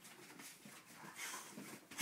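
Quiet, irregular scuffling and soft breathy sounds of a boxer dog play-boxing with a man, jumping up on its hind legs to paw at his fist.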